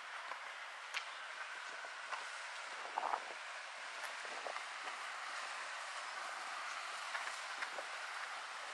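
Outdoor ambience of a steady rushing hiss from wind and rustling leaves, with a few faint scattered clicks and a slightly louder short sound about three seconds in.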